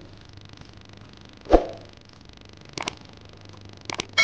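A fork stirring a thick, moist chutney in a glass bowl, with a couple of light clicks of the fork on the glass near the end. About one and a half seconds in, one short, sharp sound stands out as the loudest thing.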